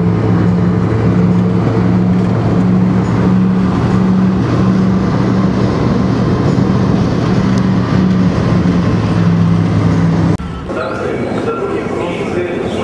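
Road vehicle's engine and road noise heard from inside the cabin while driving, a steady low hum whose upper note pulses on and off. It cuts off suddenly about ten seconds in, giving way to the quieter background of a metro station escalator.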